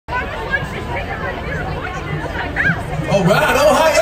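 Crowd chatter: many voices talking at once, with a few louder shouts near the end.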